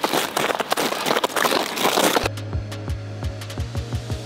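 Crunching footsteps on gravel-covered ice mixed with wind noise on the microphone. A little over two seconds in, this cuts off and background music takes over, with a steady bass note and a regular beat.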